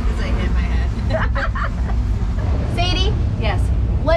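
People talking indistinctly over a steady low rumble, with one clearer, higher voice briefly near the end.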